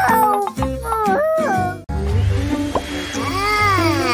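Cartoon character voice effects over background music: short cries that swoop up and down in pitch, with a brief break about two seconds in and a long falling cry near the end.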